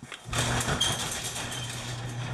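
Electric garage door opener starting up about a quarter second in and raising the overhead door: a steady low motor hum over an even rattling noise from the moving door.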